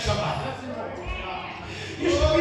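A man's voice preaching through a microphone and PA in a large hall, trailing off quieter after about half a second, with a couple of short low thuds.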